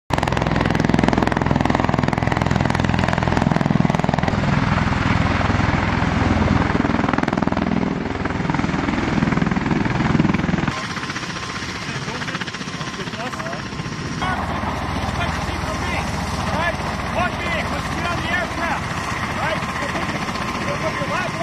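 MV-22B Osprey tiltrotor landing, its proprotors and engines running loud with a deep drone, until a sudden cut about ten seconds in. After it the sound is much quieter, and a few seconds later people are talking.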